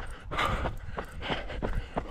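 A runner's heavy breathing, two hard breaths about a second apart, with faint footfalls on a tarmac road. He is breathing hard from a long uphill climb.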